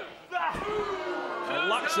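A referee's hand slapping the wrestling ring canvas for a pin count, heard as a thud about half a second in. A drawn-out voice follows it, and commentary speech begins near the end.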